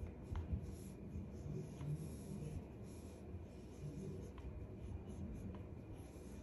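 Faint scratchy rubbing of a section of bleached hair being drawn between the plates of a flat iron, with a few light clicks of the iron being handled.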